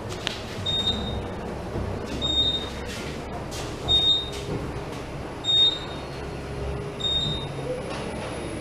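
Otis Gen2 elevator car travelling upward: a low, steady ride rumble, with a short high beep repeating about every one and a half seconds.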